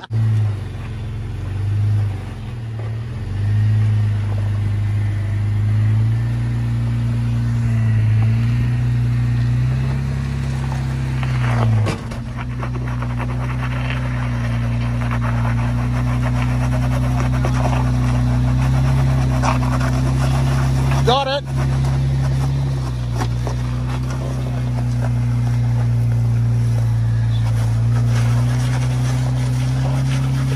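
Jeep Wrangler engine running at low crawling speed, its pitch rising and falling as the throttle is worked over rocks, with a brief high rising sound about two-thirds of the way in.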